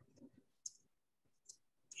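Near silence broken by a few faint computer keyboard keystrokes, about two-thirds of a second and a second and a half in, as a word is deleted and retyped.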